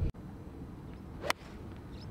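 A golf club striking the ball off the tee: one sharp, brief crack about a second in. The ball is caught thin.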